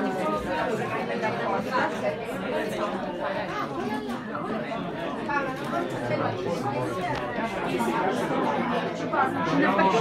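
Crowd chatter: many people talking at once in a room, overlapping voices with no single speaker standing out.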